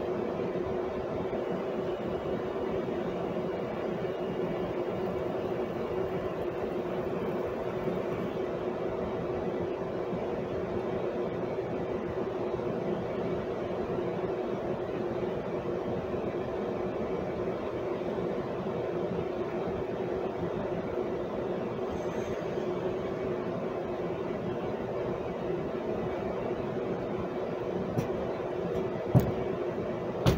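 A steady mechanical hum that does not change, with a couple of sharp clicks near the end.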